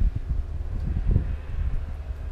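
Wind buffeting the microphone: a low, uneven rumble that rises and falls.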